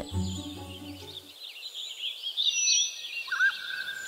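Small songbirds chirping and twittering in quick, wavering calls, ending in a short rising whistle that holds one steady note. A low sustained music chord underneath fades out about a second in.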